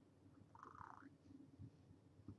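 Near silence: room tone with faint low crackle, and one brief faint higher-pitched sound about half a second in.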